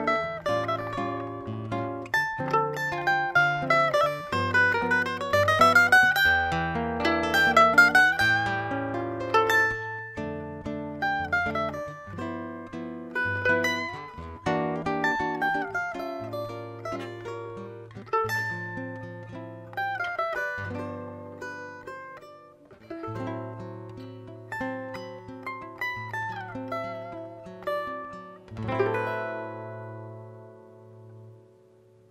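Cavaquinho and nylon-string classical guitar playing an instrumental duet, with a quick plucked melody over a guitar bass line. A final chord near the end rings out and fades.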